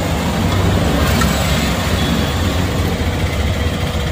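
A vehicle engine idling steadily, with a low, even rumble.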